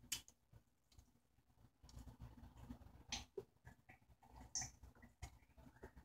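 Near silence with faint sips and swallows of tea from a coffee mug, and a few small clicks.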